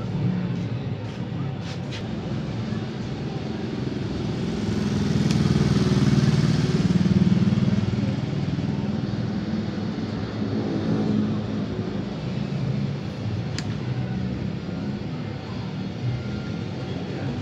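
Motorcycle engine running at idle, its low rumble swelling louder for a few seconds around the middle before settling back.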